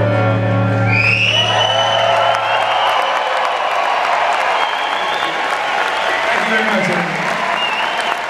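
The song's final guitar chord rings out and stops about three seconds in. A large arena crowd bursts into applause and cheering, with whoops, about a second in and keeps going.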